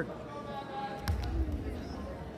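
One heavy thud about a second in as two wrestlers hit the wrestling mat in a takedown, with faint voices from the gym behind.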